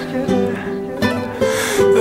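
Band dance music in a short instrumental gap between two sung lines of a Turkish song, with sustained melody tones going on under the pause in the vocals.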